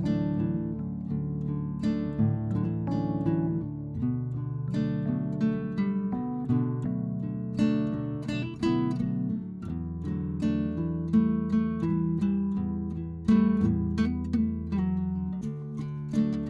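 Background music of acoustic guitar, plucked and strummed.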